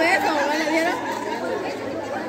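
Several people talking at once, with one voice loudest in the first second.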